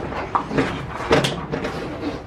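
Detached Nissan Cefiro door shell clunking and knocking as it is swung about by hand, with the sharpest knock a little over a second in.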